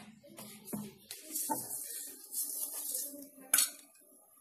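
A stuffed paratha sizzling faintly in oil on an iron tawa, with a metal spatula clinking sharply against the tawa about three and a half seconds in. A couple of soft knocks come in the first second.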